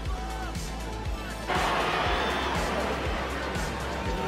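Stadium crowd noise with music, the crowd's roar swelling suddenly about a second and a half in and holding.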